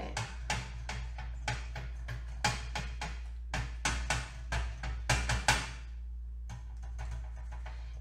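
Quick light taps of a felt-pad ink applicator dabbing onto thin metal tree cutouts, two or three a second, thinning out to a few faint taps near the end.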